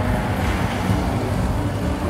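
Funfair din: a steady low rumble with no clear words or tune.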